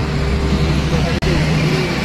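A steady engine hum under a constant wash of outdoor noise, broken by a momentary dropout just past the middle.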